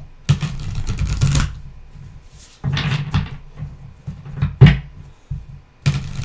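A deck of cards shuffled by hand in several short bursts of rustling card-on-card slides, with a sharper knock of the deck about two-thirds of the way through.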